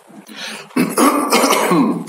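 A man clearing his throat: one harsh, rough rasp lasting about a second, starting nearly a second in.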